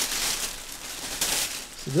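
Plastic shopping bag rustling and crinkling as items are pulled out of it.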